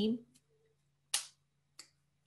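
Two sharp finger snaps, one about a second in and one near the end, over a faint steady low hum.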